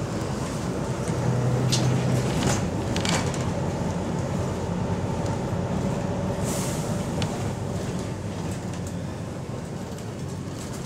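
Inside a moving double-decker bus: the diesel engine's steady hum grows louder about a second in as it pulls harder, then slowly eases off. A few knocks and rattles come through the body, with a short hiss of air about six and a half seconds in.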